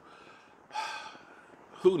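A man's audible breath through the mouth, one short breathy intake lasting about half a second, about a second in; his speech resumes near the end.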